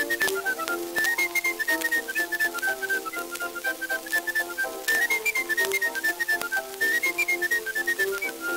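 Early-1900s recording of a lively instrumental tune: a high, clear melody of quick notes over a lower, busier accompaniment, with frequent clicks and crackle from the worn recording surface.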